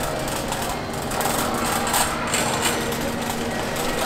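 Wire shopping cart being pushed across a hard store floor: a continuous dense clatter and rattle from its casters and metal basket.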